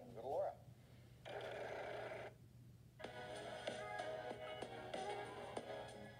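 Video audio played through a phone's small speaker: a brief voice at the start, a short burst of noise, a moment's dip, then music from about halfway through.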